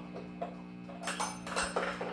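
Steady electric guitar amplifier hum, with a quick run of light clicks and taps in the second half from the guitar's tremolo bridge being handled.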